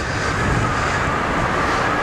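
A passing vehicle: a loud, steady rushing noise that swells up and then holds, with a faint tone slowly falling in pitch.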